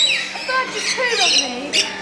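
A flock of lorikeets squawking and chirping, many short high calls overlapping.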